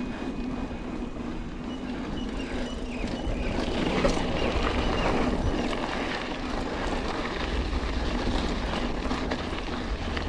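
Mountain bike rolling over a trail, its tyres crunching and the bike rattling over loose stones and gravel, with a steady low rumble. The noise grows louder about four seconds in as the bike comes off a smooth path onto the rocky gravel.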